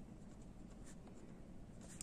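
Pen writing on lined notebook paper: faint, light scratching strokes as words are written.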